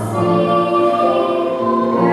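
Children's choir singing in long, held notes.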